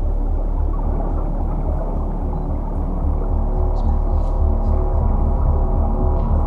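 Closing music of a documentary trailer's soundtrack: sustained, droning tones over a deep, pulsing rumble, steady throughout.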